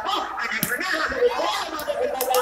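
A volleyball being struck by hands during a rally: two sharp smacks, about half a second in and near the end, over a background of voices.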